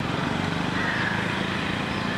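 Steady outdoor street noise with a low engine hum.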